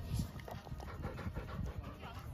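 A large dog panting close by, in quick, uneven breaths.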